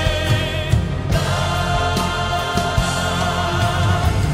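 Praise-and-worship music: a choir singing long held notes with a band accompanying, the chord changing about a second in.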